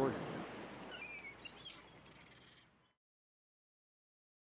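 Ocean surf washing on a sandy beach, a soft rushing noise that fades out over about three seconds, with a couple of short falling bird chirps about a second in.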